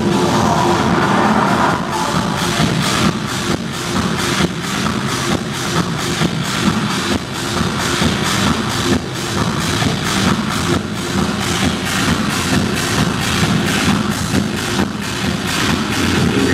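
Techno DJ set played loud over a club sound system, driven by a steady kick drum at about two beats a second.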